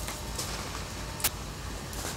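Steady low rumble and hiss of background noise, with a single sharp click a little past halfway.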